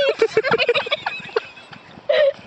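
Rapid staccato laughter, trailing off after about a second.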